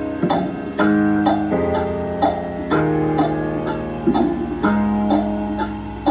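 Background music led by strummed guitar chords, with a steady rhythm and the chord changing every second or so.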